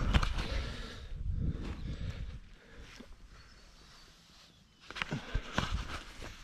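Low rumble of wind buffeting the camera microphone, fading after about two seconds. Near the end come a few sharp knocks and rustles as the camera is handled against a jacket.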